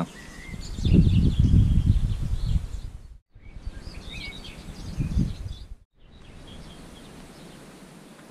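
Outdoor ambience with birds chirping, broken by low wind buffeting on the microphone in gusts, loudest in the first half. The sound cuts out briefly twice, and the last seconds are quieter with a steady hiss.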